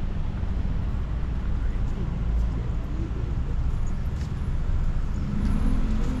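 Steady low rumble of outdoor city ambience, with faint voices in the background.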